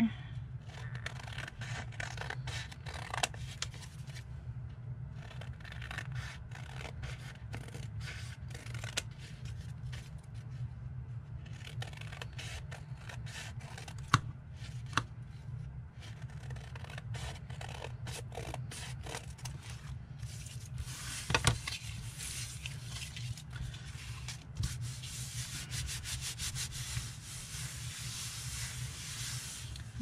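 Scissors snipping through paper, with short irregular ticks of blades and handled paper and one sharper click about midway. Near the end comes a steady rubbing hiss as hands smooth a paper card flat on a wooden table. A steady low hum runs underneath.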